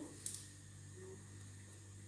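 Faint room tone with a steady low hum and no distinct event.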